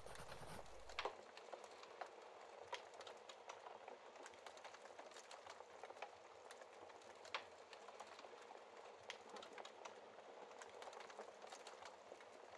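Faint wood fire crackling in a fireplace: irregular small pops and snaps over a soft hiss. A low rumble underneath cuts out about a second in.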